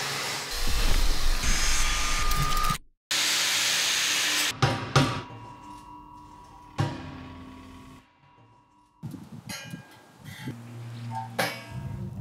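Right-angle grinder with a Norton Vortex Rapid Blend disc blending and polishing the heater's steel, cutting off suddenly after about three seconds, then a second short burst of grinding. After that come a few sharp metal clicks and knocks that ring on briefly as the heater's door latch is worked.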